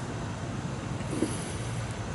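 Steady background noise with a low hum underneath.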